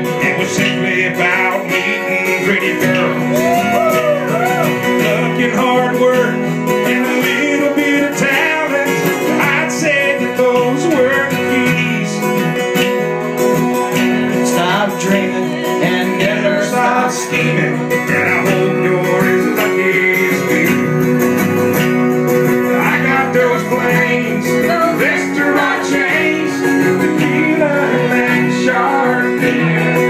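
Live acoustic guitar-led country music, played continuously.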